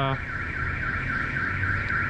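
Car alarm siren warbling, its tone sweeping up and down several times a second, over a low rumble.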